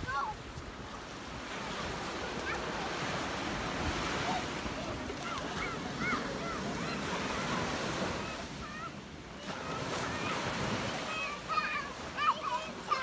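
Ocean surf washing up the beach as a steady rush of water. Young children's high voices call out over it now and then, more toward the end.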